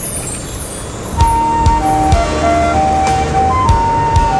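Background music, an instrumental interlude of a song. It opens with a falling high shimmer, and about a second in a melody of long held notes starts over low drum beats.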